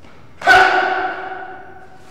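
A single sharp hit about half a second in that rings on with a few steady tones, dying away over about a second and a half.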